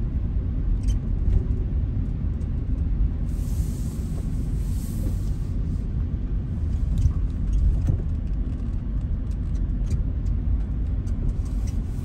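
Steady low rumble of a car driving on a snow-covered road, heard from inside the cabin: engine and tyre noise. A few faint clicks, and a brief hiss about three seconds in.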